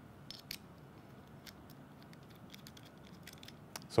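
Faint scattered clicks and light scrapes of a metal target bow sight being handled as its dovetail is fitted back onto the mounting bar and a knurled knob is hand-tightened, with two sharper clicks about half a second in.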